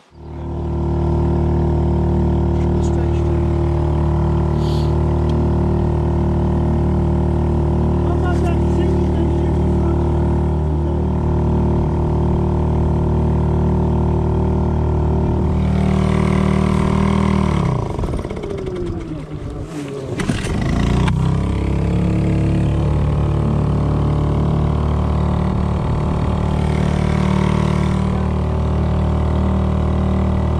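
Small outboard motor running at steady revs, pushing a rowing boat along. About two-thirds of the way in the revs sag and then pick up again; the crew say the motor has to be kept slightly on choke the whole time to keep it running.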